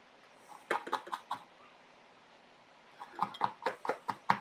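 Light, sharp clicks and taps in two clusters, about five a little under a second in and a quicker run near the end, as small tools are handled at a soldering bench.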